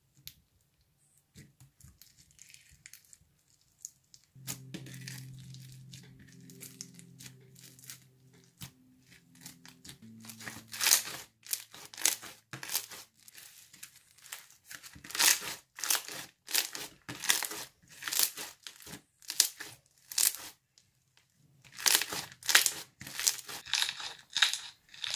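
Hands squeezing and poking a white-glue slushy slime full of beads, making crunches and bubble pops: sparse faint clicks at first, then from about ten seconds in a fast run of sharp crackling pops.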